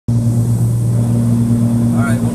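Cabin drone of a Cessna 340's twin piston engines and propellers in flight: a steady, low hum with a strong deep tone that does not change.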